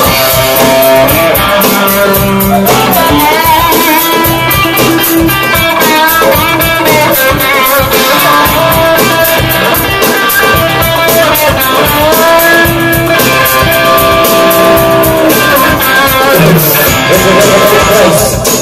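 Live band playing an instrumental break: electric guitar over keyboards and a steady drum beat, loud, with no singing.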